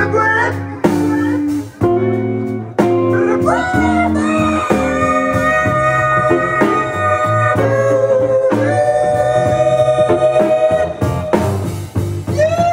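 Male jazz vocalist singing, with short phrases at first and then long held notes from about three and a half seconds in, over an eight-string guitar playing bass notes and chords.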